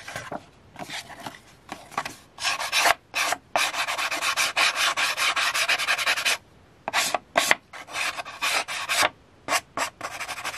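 Fingernail file (emery board) rubbed in quick back-and-forth strokes along the cut edge of a paper book page, smoothing off the rough cut. A long unbroken run of strokes in the middle, with shorter runs and brief pauses before and after.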